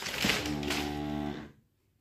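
A person's drawn-out hum, one steady tone about a second long, after a brief rustle of the cardboard toy box being handled; the sound cuts off suddenly into silence.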